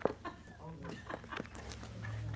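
Quiet room sound: a steady low hum with faint, broken-up voice sounds and a couple of small clicks, the first right at the start and another more than halfway through.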